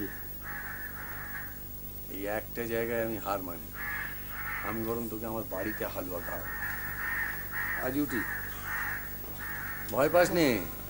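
House crows cawing repeatedly, with a person's voice heard in short bursts in between.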